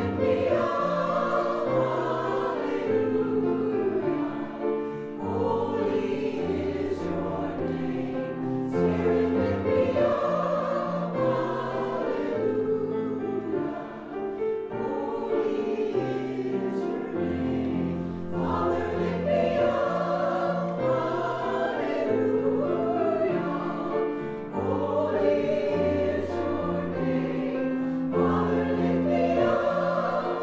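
Church choir singing a slow anthem, with sustained low accompanying notes beneath the voices, the phrases swelling and easing every few seconds.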